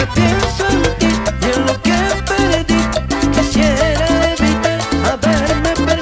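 Live cumbia band playing, with an accordion, an electric bass and percussion keeping a steady dance beat under a wavering melody line.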